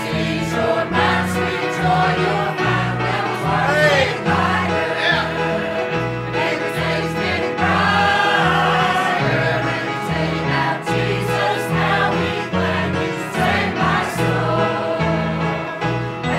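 Church choir of men and women singing a gospel song together, over an instrumental accompaniment with a low bass line stepping from note to note.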